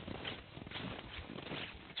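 Footsteps crunching on packed snow, a quick uneven run of several steps a second from people walking.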